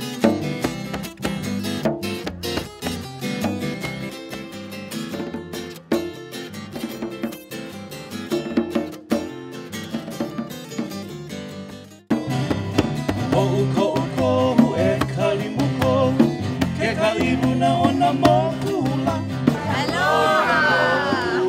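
Acoustic guitar music with quick plucked notes. About twelve seconds in it cuts abruptly to a fuller passage in which a voice sings over the guitar.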